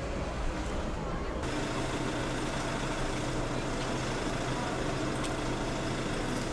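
Steady outdoor background noise, like distant street traffic, with an abrupt change in the background about a second and a half in, after which a low steady hum runs on.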